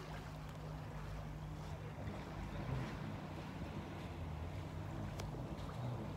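Jet ski engine running steadily out on the water, a low even drone.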